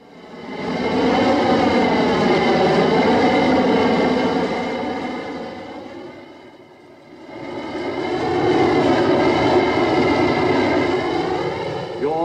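Deep, drawn-out bellowing roar of a fire-breathing minotaur idol, a film sound effect. It comes as two long swells of about five seconds each, wavering in pitch, with a dip between them.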